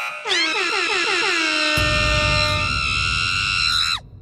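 Game-show sound-effect sting: a cluster of falling synth glides about a quarter second in settles into a held multi-tone chord, with a low rumble joining a little before halfway, then it stops abruptly. It marks the ten-second countdown running out with the question unanswered.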